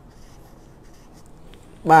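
Faint rubbing and a few light clicks of hands handling items on a counter. A man's voice starts near the end.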